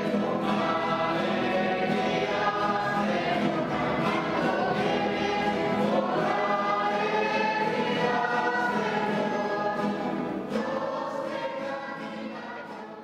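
Choir singing a hymn, beginning to fade out over the last second or so.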